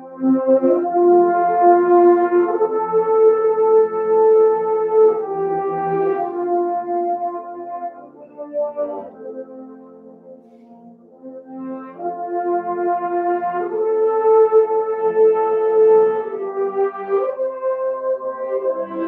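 A French horn choir playing held chords in several parts. The phrase is loud at first, falls to a soft passage about halfway through, then swells loud again.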